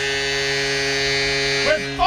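Hockey arena goal horn sounding a steady, low buzzing chord after a goal. A commentator's voice comes in near the end.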